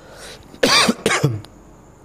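A man coughs, hand raised to his mouth: two coughs in quick succession starting a little over half a second in, the second trailing off lower.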